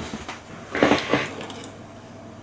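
Brief handling noise about a second in, as a rusted harmonica reed plate is picked up off a tiled tabletop.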